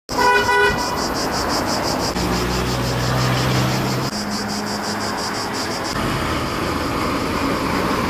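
A short vehicle horn toot just after the start, then steady outdoor traffic noise with a vehicle engine humming for a few seconds in the middle. A rapid high-pitched pulsing, about four a second, runs through most of it.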